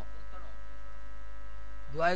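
Steady electrical mains hum, a low drone with faint steady higher tones above it, from the microphone and amplifier chain.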